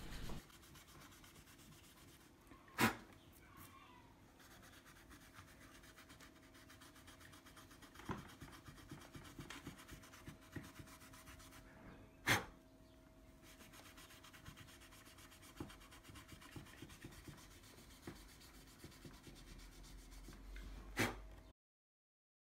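0000 wire wool being rubbed over a bass guitar's rusty frets to clean them: a faint, uneven scrubbing. A few sharp clicks come about every four to five seconds, and the sound cuts off just before the end.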